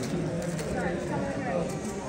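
Indistinct chatter of many people in a large hall, with faint scattered light clicks.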